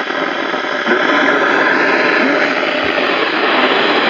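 NOAA weather radio hissing with loud, steady static while it is moved off one broadcast and onto another, a faint voice buried under the noise.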